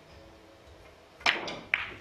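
Three-cushion carom billiard balls colliding: two sharp clacks about half a second apart, the first the louder, with a softer click between them.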